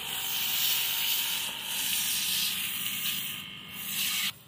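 Steady hiss of a water jet from a Proffix 12 V DC portable pressure washer's spray gun, spraying onto a car's bodywork.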